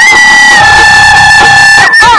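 Bihu dance music: a wind instrument holds one long high note, slightly lowering in pitch early on, over a lower held tone. Both stop just before the end as the tune moves on.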